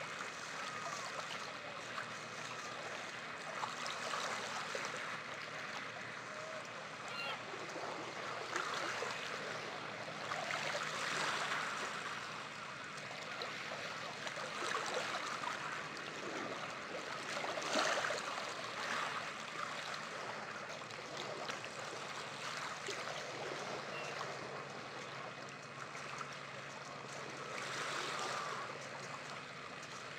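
Small waves washing onto a beach, a steady wash that swells and eases every few seconds.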